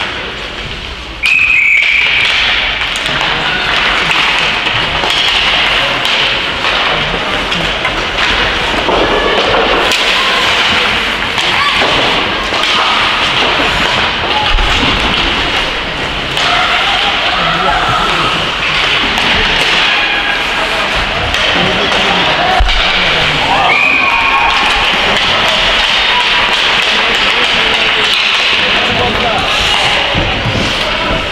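Ice hockey game in a rink: players and spectators calling and shouting, with occasional thuds of puck and sticks against the boards. A short referee's whistle blast about a second in and another about 24 seconds in.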